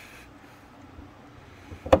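Quiet room tone, then one sharp metallic click near the end as a hand-held paintless-dent-repair lifter is set against the underside of a car hood.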